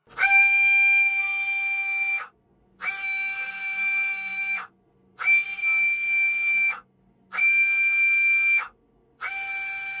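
JK Hawk 7 FK slot car motor spinning up to a steady high-pitched whine and being braked to a sudden stop, five times in a row, during a motor analyser's braking test. Each run lasts about one and a half to two seconds, with short silent gaps between them.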